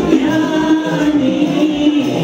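Several men singing together into microphones over music, holding a long note.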